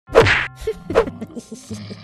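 Two cartoon punch sound effects, a loud whack right at the start and a second hit just under a second later, with short musical notes in between as a title sting.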